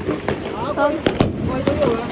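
Firecrackers going off on the ground: a few sharp cracks, the two loudest close together about a second in.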